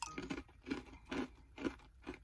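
Crisp salted banana chips being chewed: four crunches, about two a second.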